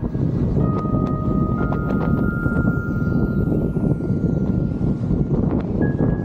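Wind buffeting the action camera's microphone and water rushing under a wingfoil board at speed: a heavy, steady rumble. Faint held tones ride over it.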